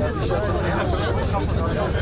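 Several people talking over one another inside a moving gondola cabin, over a steady low rumble from the cabin's travel on the cable.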